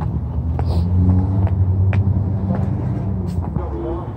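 A road vehicle's engine running close by: a steady low rumble, with a few light clicks over it.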